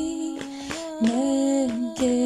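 A woman humming a slow melody in long held notes, dropping to a lower note about halfway through.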